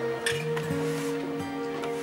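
Background music of held notes that shift in pitch every half second or so.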